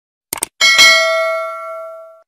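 Two quick clicks, then a bright notification-bell chime about half a second in that rings on and fades away. This is the stock sound effect of a subscribe-button animation: the cursor click and the bell-notification ding.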